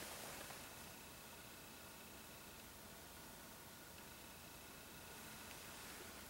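Near silence: faint room tone with a steady hiss.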